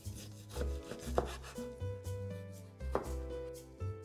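A chef's knife chopping tomato on a wooden cutting board: a few sharp knocks of the blade on the board, the clearest about a second in and about three seconds in.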